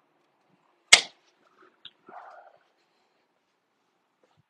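A single sharp knock about a second in, then a few faint, softer clicks and a brief rustle.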